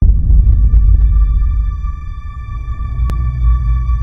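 Cinematic trailer sound design. A sudden deep bass boom opens into a sustained low rumble, with several steady, ringing high electronic tones held above it. A short sharp click comes about three seconds in.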